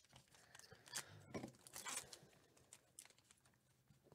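Faint tearing and crinkling of a Topps Gold Label trading-card pack wrapper being opened by hand: a handful of short, scattered crackles and rustles.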